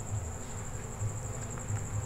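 A cricket trilling steadily at a high pitch, over a faint low rumble.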